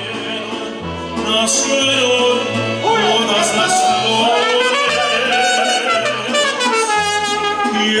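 Mariachi band playing: a trumpet carrying the melody over strummed guitars and low plucked bass notes on a steady beat, with a man singing into a microphone.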